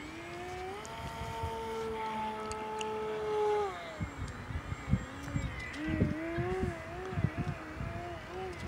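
Electric motor and propeller of an FT Edge 540 RC plane whining overhead, on a prop the pilot thinks too small for it. The pitch rises and holds for a few seconds, drops, then wavers up and down with rapid throttle changes. Gusty wind rumble on the microphone underneath.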